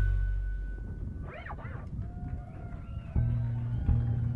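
Final chord of a Latin-jazz piano trio ringing out and fading. A brief rising-and-falling call comes from the audience a little over a second in, and a held electric bass note sounds near the end.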